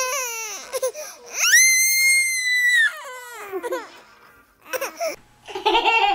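Toddlers wailing: a falling cry, then one long, very high-pitched shriek lasting about a second and a half, then shorter falling cries.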